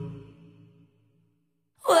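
A pop song's music dies away over the first second into a moment of silence. Then a woman's singing voice comes straight back in near the end.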